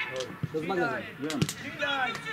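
Men's voices talking near the microphone, with two short dull thumps about half a second and a second and a half in.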